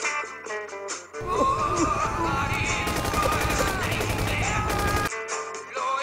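Rock song with guitar, cut off about a second in by roughly four seconds of loud war-film sound: a dense rumble with shouting, then rapid automatic gunfire, before the song resumes near the end.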